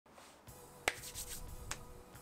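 Finger snap: one sharp, loud snap just under a second in, then a second, quieter click near the end.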